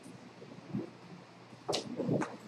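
Handling noise from a handheld microphone as it is passed or picked up: a soft bump, then a sharper knock with a click near the end.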